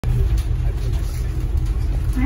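Steady low rumble of a moving bus heard from inside its cabin: engine, drivetrain and road noise.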